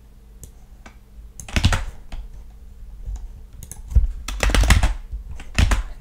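Computer keyboard keys being pressed: irregular clicks that come singly at first and then in short runs, the densest a little past the middle. A faint steady low hum lies under them.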